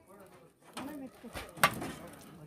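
A coconut is struck to crack it open, one sharp knock about one and a half seconds in. Voices talk faintly around it.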